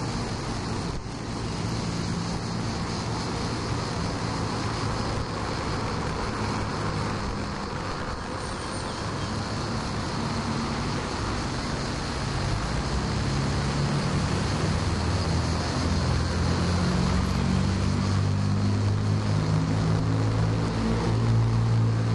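Steady hum of road traffic, with a low engine drone that grows louder over the second half.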